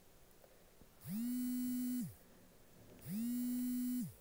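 A small motor buzzing in two spells, each about a second long and a second apart; each one rises in pitch as it starts and falls as it stops.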